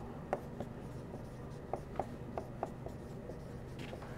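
Marker pen on a whiteboard writing letters: faint short squeaks and taps, one stroke after another.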